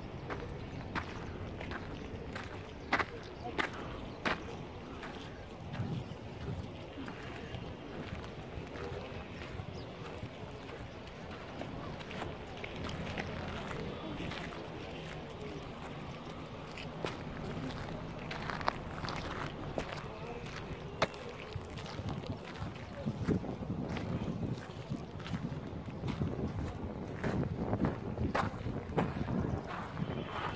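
Footsteps on granite steps and gritty sand, irregular scuffs and steps, with other visitors talking indistinctly in the background.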